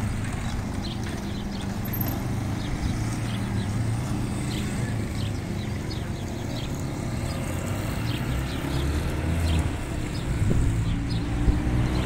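Street traffic: a steady low car-engine hum that grows louder over the last few seconds, with faint scattered light ticks.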